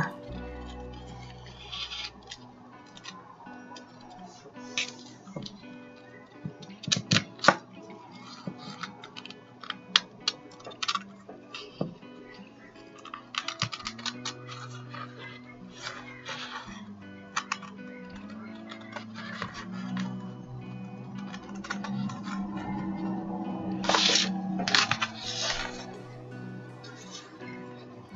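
Background music with steady held tones, over crisp clicks of scissors snipping through thin napkin tissue and card in several short runs.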